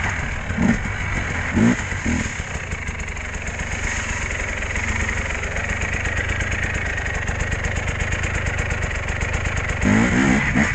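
Dirt bike engine running at low revs, with three short throttle blips in the first two seconds, then settling to a steady idle.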